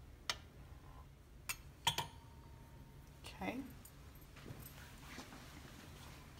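A few sharp clicks and clinks of a kitchen utensil on a hard counter in the first two seconds, the last one ringing briefly.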